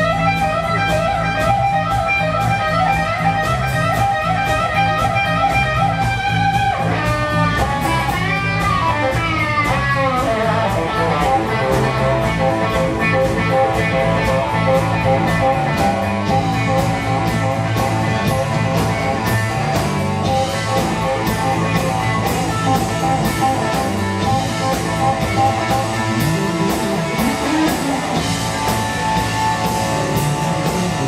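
Electric guitar solo played live through an amplifier with a band behind it. Long held notes with wide vibrato give way, about seven seconds in, to notes bent and sliding up and down in pitch, then quicker phrases over a steady bass line and drums.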